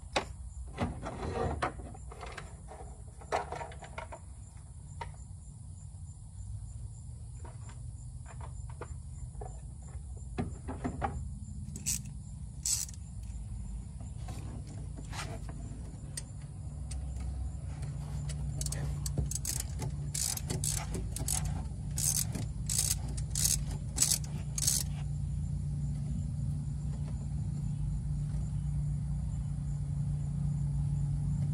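Hand tools working the 10 mm mounting bolt of an oil catch can bracket: scattered metallic clicks and knocks, then a run of about a dozen sharp clicks, roughly two a second, as the bolt is tightened. A low hum grows louder underneath in the second half.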